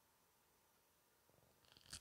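Near silence: room tone, then faint rustling handling noise from a little past halfway and one short sharp click just before the end.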